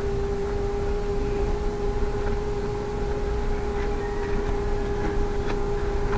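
A steady hum held at one unchanging pitch, with a fainter overtone, over a constant low rumble.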